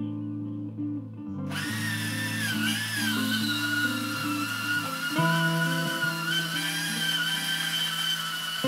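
A handheld electric power tool starts about a second and a half in and runs with a high motor whine on steel channel. Its pitch wavers briefly, then holds steady, over background guitar music.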